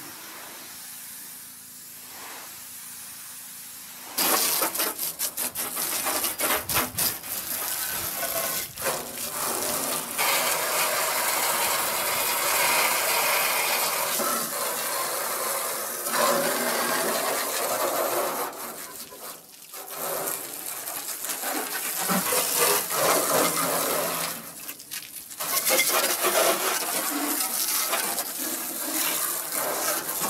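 Pressure washer jet spraying water over the bare, rusted steel body shell of a 1965 VW Beetle: a loud hiss and splash that starts about four seconds in and rises and falls as the spray moves over the panels, dropping away briefly twice.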